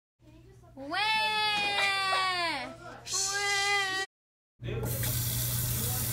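A high-pitched wailing cry, one long cry that falls away at its end and then a shorter one. After a brief silence, a faucet starts running steadily into a stainless steel sink.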